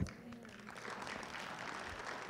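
A congregation applauding, coming in softly about half a second in and holding steady.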